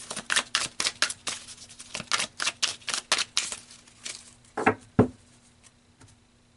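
A deck of tarot cards being shuffled by hand: quick papery slaps of cards, about four a second. They are followed by two heavier thumps near the end.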